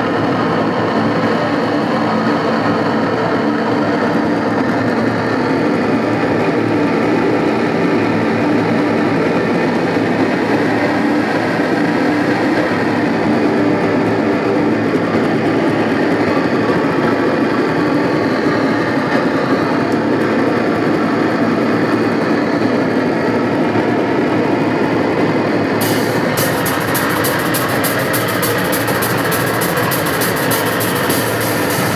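Loud, dense wall of distorted electric guitar through an amplifier, droning steadily without a clear beat. About 26 seconds in, rapid cymbal hits join.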